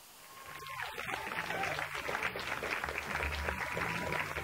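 Audience applauding over music with a steady bass beat, both coming in about half a second in.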